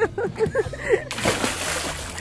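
A child jumping into a lake, her body hitting the water with a splash that starts about halfway through and lasts just under a second.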